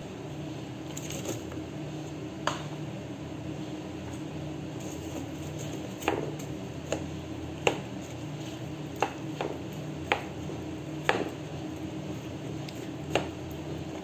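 Plastic spoon stirring thick cake batter with apple slices in a glass mixing bowl: wet squishing with about nine sharp clicks as the spoon knocks against the glass, most in the second half, over a steady low hum.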